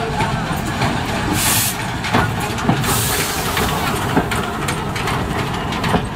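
Small steam tank locomotive and wooden carriages rolling slowly past: a steady low rumble with scattered wheel clicks and two short bursts of hiss, about one and a half and three seconds in.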